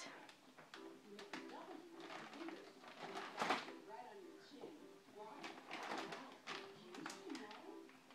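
A toddler handling a plastic bag of shredded cheese, with brief crinkles of the bag, the clearest about three and a half seconds in, under faint voice sounds.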